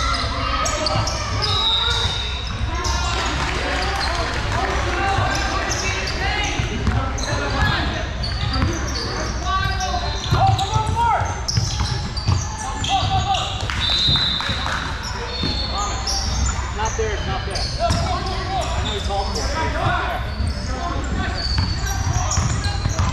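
Basketball game sounds on a hardwood gym court: a ball being dribbled with repeated bounces, sneakers squeaking on the floor, and indistinct voices of players and spectators calling out, all ringing in a large gym.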